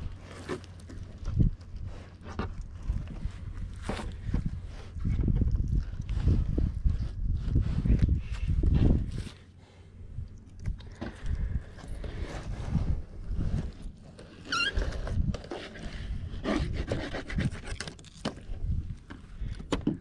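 Fillet knife slicing a redfish fillet off its skin on a plastic table: irregular scraping, rubbing and knocks, with heavier low rumbling stretches partway through and a short high chirp about two-thirds of the way in.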